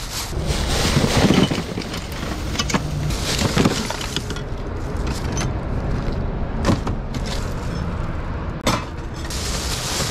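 Plastic bags rustling and crinkling as gloved hands rummage through them, loudest in the first few seconds, with a few sharp clicks of small items knocking together. A steady low rumble runs underneath.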